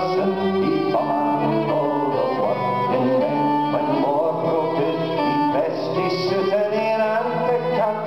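Fiddle playing a melody over strummed acoustic guitar: an instrumental passage of a folk song, with no voice.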